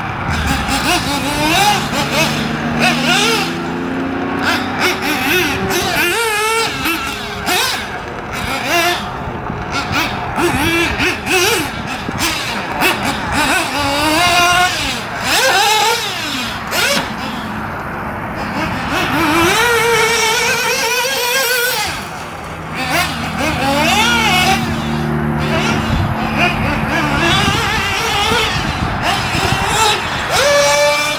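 Kyosho MP10 1/8-scale nitro buggy's engine revving up and down as it is driven, its pitch rising and falling over and over. A steady low drone sits underneath at the start and again in the last third.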